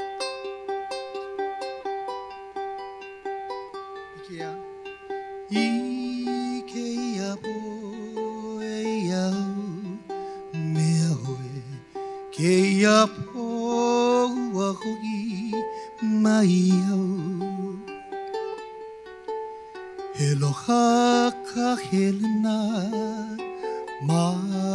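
Ukulele and acoustic guitar accompaniment of a Hawaiian song, plucked notes alone at first, with a voice singing over it from about five seconds in.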